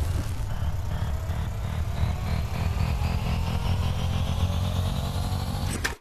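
Loud motor-vehicle engine noise: a steady low rumble with a whine that climbs slowly in pitch, like a vehicle accelerating. It cuts off suddenly just before the end.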